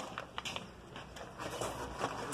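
Paper sack of hydrated lime being handled and tipped into a concrete mixer drum: faint rustling of the bag with a few short clicks near the start.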